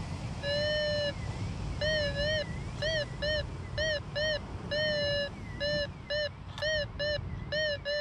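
Minelab Go-Find 66 metal detector sounding its target tone again and again as the coil is swept back and forth over a buried metal target: about a dozen clean, mid-pitched beeps, each rising and falling in pitch, some short and some drawn out.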